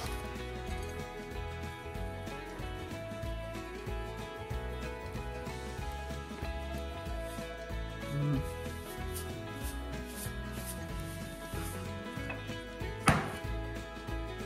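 Background music with a steady beat, and a single sharp knock near the end.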